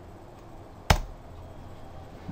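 A single sharp keystroke on a computer keyboard about a second in, the Enter key entering a spreadsheet formula, over faint room hum.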